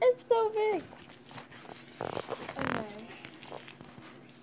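A short high-pitched voice sound with falling pitch in the first second, then a rustle about two seconds in as a toy doll's disposable diaper is handled.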